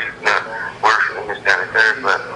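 A voice talking over a phone line; the words are not made out.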